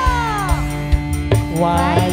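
Live band music with a female singer's voice sliding down through a long, wavering note, over steady bass and several drum strokes.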